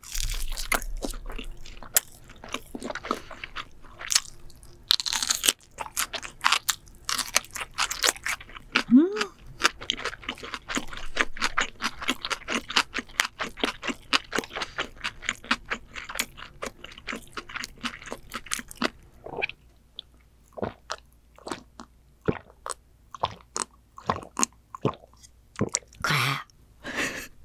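Close-miked crunchy chewing of a bite of crisp fried-ramen pizza, rapid and dense at first, then thinning to sparse single crunches near the end. A short hum is heard about nine seconds in.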